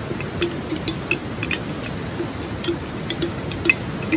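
A wooden spoon scraping and tapping inside a plastic jar as soaked rice is knocked out into a pan of water, giving irregular small clicks and ticks with a wet squish.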